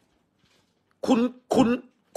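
Speech only: a voice says two short words, the same word twice, after about a second of near silence.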